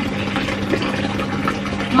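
Steady rushing, machine-like noise over a constant low hum, coming through a thin wall from the neighbour's side.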